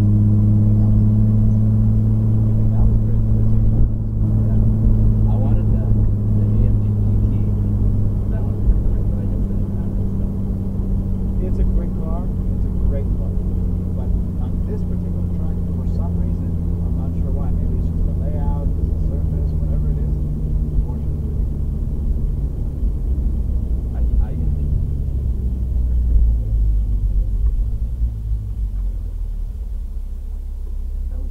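Toyota Supra A90's turbocharged 3.0-litre inline-six running at low revs as the car rolls slowly, heard from inside the cabin. Its steady low drone sinks gradually in pitch and drops lower near the end as the car slows almost to a stop.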